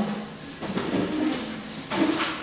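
Workshop room with a group of people during a pause in talk: faint scattered voices and movement, and a sharp knock near the end.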